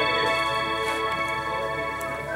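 Music: a long held organ-like chord of several sustained notes, slowly fading.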